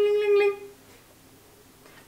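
A doorbell ring: one steady, single-pitched tone lasting under a second, sounded again partway through, then it stops.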